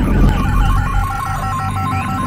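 Electro-acoustic music made from short-wave radio sounds: a quick series of short beeping tones pulses over a steady low drone, with faint sweeping whistles like a radio dial being tuned.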